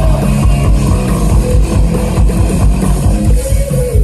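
Live rock band playing loud, with electric guitar and bass guitar over drums.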